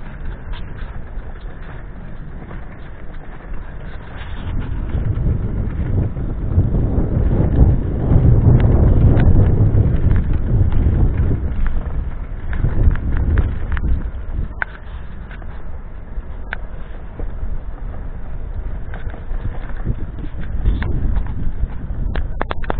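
Wind buffeting the microphone as a loud, uneven low rumble that swells in the middle, with scattered sharp clicks and knocks from the moving camera.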